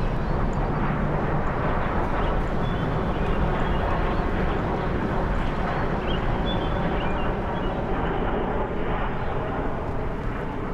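Steady outdoor background rumble, like distant traffic, with small birds chirping faintly now and then.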